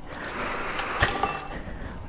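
A handful of sharp metallic clicks and clinks from hand pliers being handled, with a short high ring after the clicks about a second in, then a soft rustle.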